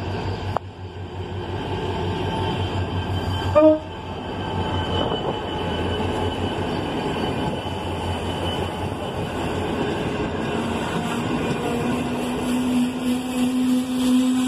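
Diesel locomotive rumbling past as a passenger train arrives, with one short, loud horn blast about three and a half seconds in. Then the passenger coaches roll by on the rails, and a low steady whine comes in near the end.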